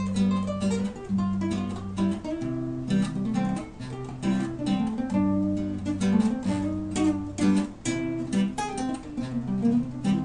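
Two guitars playing a song in C together. Chords are strummed in a steady rhythm over held low bass notes.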